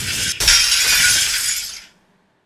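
Glass-shattering sound effect: a rush of noise builds, breaks off for an instant, then a loud crash of breaking glass comes about half a second in and fades out over the next second.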